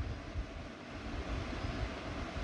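Faint steady low rumble with a light hiss underneath, no distinct splashes or events.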